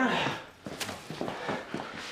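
A series of quick footsteps on a hard tiled floor, short sharp steps following one another for about a second and a half.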